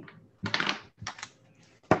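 Three short clattering bursts of handling noise on a video-call participant's microphone, with near silence between them.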